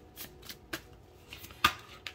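Oracle cards being shuffled and handled: a soft rustle with light clicks, the sharpest click about a second and a half in.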